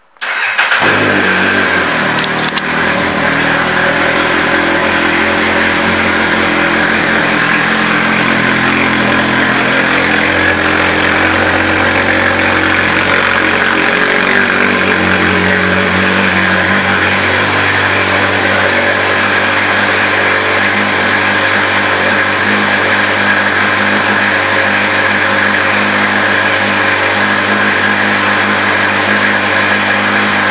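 Kawasaki Z800's inline-four engine, breathing through a Two Brothers Racing aftermarket exhaust, fires up suddenly right at the start and then idles steadily.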